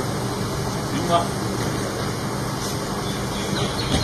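A steady low mechanical hum, with faint voices of people in the background.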